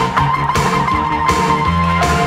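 Post-punk/new wave rock band music: a long held high lead note over a pulsing bass line and drums.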